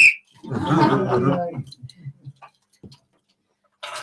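A brief high-pitched squeal right at the start, then about a second of indistinct voices talking, which thin out into silence before a voice starts up again near the end.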